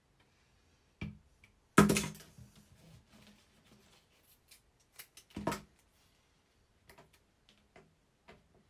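Hands working paper and craft materials on a tabletop: a few short knocks and rustles, the loudest about two seconds in, then light ticks near the end.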